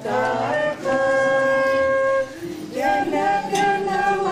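Transverse flute playing a slow melody in long held notes, with a group of voices singing along. There is a brief break about two and a half seconds in.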